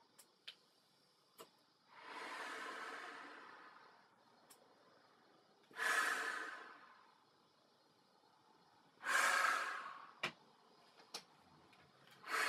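Breathing through a rubber GP-5 gas mask and its corrugated hose: three loud, rushing breaths a few seconds apart, the first slower and longer, the next two starting sharply. A few short clicks fall between the breaths.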